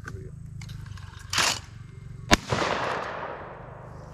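A single light 12-gauge shotgun shot about two and a half seconds in, its report echoing and dying away over about a second as the clay target is hit. About a second before the shot there is a short rushing noise.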